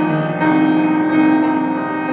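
Slow piano music, held chords ringing on, with a new chord struck about half a second in.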